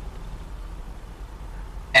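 A pause in the talk: only a steady low hum and faint background hiss on the recording.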